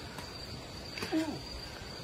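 Crickets chirring outdoors at night, a steady high-pitched trill that runs throughout. A short voice sound breaks in about a second in.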